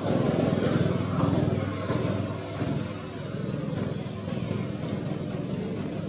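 A motor vehicle's engine running, a low rumble that is loudest in the first two seconds and then eases off.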